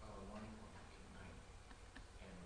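Faint low muttering in the first half second, then a few light ticks in an otherwise quiet room.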